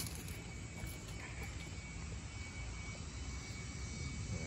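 Steady low outdoor background rumble, with a faint, thin, high-pitched steady tone running through it.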